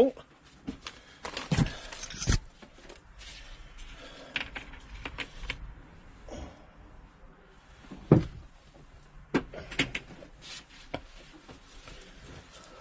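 Handling noise and scattered knocks as a wet metal valve wheel is lifted out of a plastic bucket and set down on a wooden workbench, the loudest knock about eight seconds in.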